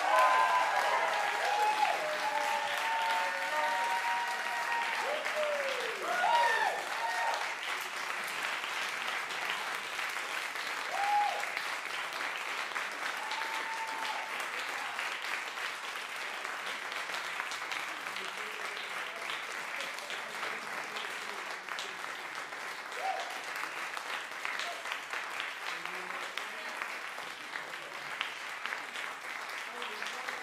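Small audience applauding steadily, with voices cheering and whooping over the clapping in the first several seconds and a few more calls later.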